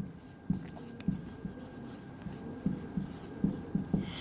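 Marker pen writing on a whiteboard: a series of short, faint strokes as letters and numbers are drawn.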